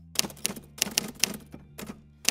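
Typewriter key-strike sound effect: a quick, irregular run of about a dozen clacks as title text types onto the screen.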